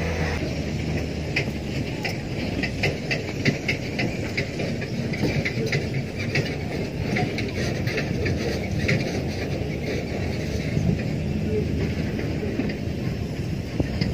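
Steady rushing noise with a low rumble and scattered faint crackles, typical of wind buffeting a phone microphone outdoors.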